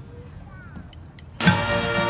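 Marching band's brass and percussion: a quiet pause after a cutoff, then the full band comes back in loudly about a second and a half in with a sustained brass chord over regular drum strokes.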